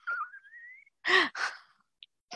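A woman's breathy laughter: a thin, rising squeak of a laugh in the first second, then two short breathy exhales a little after.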